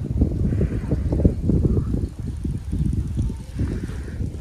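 Wind rumbling on the microphone, coming and going in uneven gusts.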